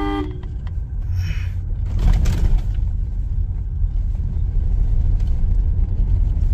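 Steady low rumble of road and engine noise inside a Toyota Fortuner's cabin as it creeps through traffic. A short horn toot sounds right at the start, and there is a brief hiss about a second in.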